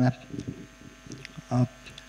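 A man speaking Nepali into a microphone: a phrase ends right at the start, then a short pause and a single brief voiced hesitation sound about one and a half seconds in.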